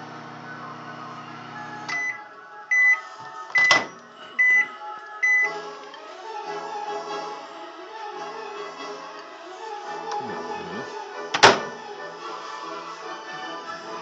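Microwave oven humming as its timer runs out, stopping about two seconds in, then five evenly spaced beeps signalling the end of the cook cycle. A loud click comes among the beeps as the door is popped open, and another sharp knock follows near the end.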